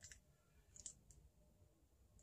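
Near silence: room tone with a few faint clicks near the middle.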